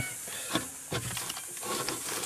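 Hands kneading flour-and-water damper dough in a bowl, pulling and folding it: a few soft handling clicks over a steady hiss.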